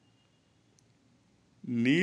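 Near silence of room tone with a faint click a little under a second in, then a man's voice starts speaking near the end.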